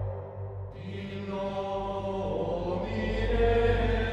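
Gregorian-style chant: sung voices holding long notes over a steady low drone, coming in about a second in and growing fuller toward the end.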